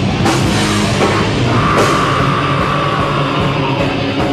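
A live heavy metal band plays loud distorted guitars, bass and drums. Cymbal crashes come at about a quarter second in and again near two seconds in, with a high note held through the middle.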